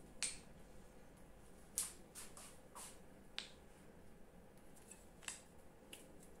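A handful of faint, irregular sharp clicks from a steel torsion-spring hand gripper being squeezed and worked in the hand, its handles and spring clicking.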